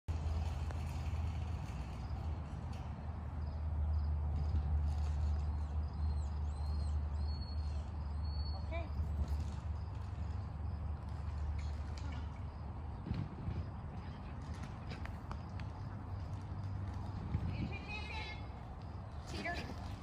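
Low rumble of wind on the microphone, easing off about halfway through, with scattered light thuds of running feet on grass and a few brief high chirps.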